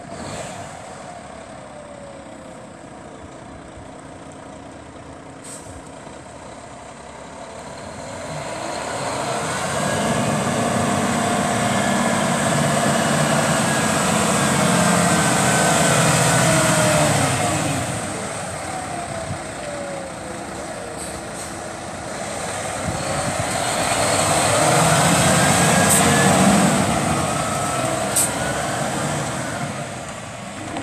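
Diesel engine of a 2012 International ProStar tractor driving past. The engine note glides up and down in pitch, and the sound swells twice, first around the middle and again near the end.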